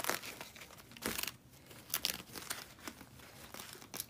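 Ankara cotton print fabric rustling and crinkling as hands fold and pinch it, in a series of brief rustles.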